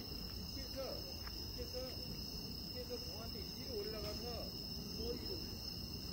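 Crickets and other night insects chirping in a continuous high-pitched drone, with faint distant voices underneath.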